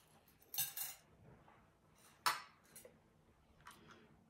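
Metal kitchen utensils being handled against a small bowl and glass jars: a brief scrape about half a second in, a sharp clink a little after two seconds, and a light tick near the end.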